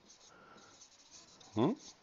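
Marker pen writing on a whiteboard: faint scratchy strokes. A short questioning 'mm?' from the writer comes near the end.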